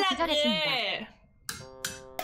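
A woman's voice, drawn out, for about the first second. After a short pause there is a click, then a brief musical sound effect of steady held tones.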